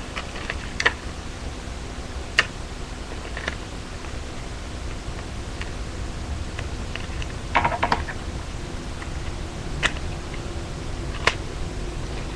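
Hands working paper and clear tape: scattered small clicks and crinkles, with a longer crackle of tape about seven and a half seconds in, over a steady low hum and hiss from the microphone.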